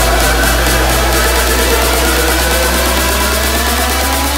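Electronic dance music in a big-room/electro-house mashup mix: a sustained deep bass under a dense synth texture, with a tone rising steadily in pitch through the second half, like a build-up riser.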